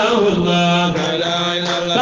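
A man chanting a devotional Sufi kassida, drawing out one long low note.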